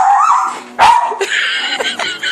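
Yorkshire terrier barking: two sharp barks about a second apart.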